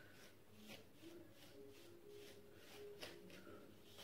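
Near silence, with faint repeated swishes of a plastic comb drawn through wet, dye-coated hair, a few strokes a second, working the dye through the lengths.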